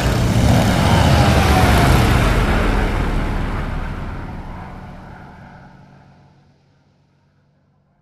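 Biplane's piston engine and propeller running, with heavy wind rush, and a tone falling in pitch a second or two in. The sound fades away to near silence by the end.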